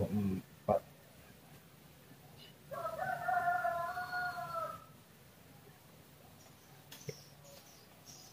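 A single drawn-out animal call lasting about two seconds, starting a little under three seconds in, holding its pitch and dropping away at the end, over quiet room tone.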